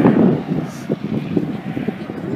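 Wind rumbling on the microphone, loudest at the very start, over the sound of a distant Bell 206 JetRanger helicopter in flight.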